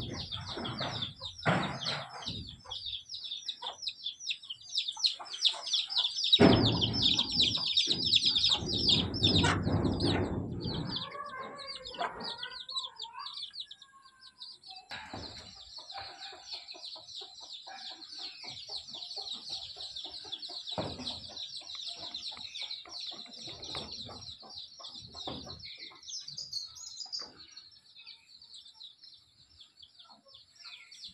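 Birds chirping in a dense, steady high-pitched chorus, with a loud low rumbling noise from about six to eleven seconds in.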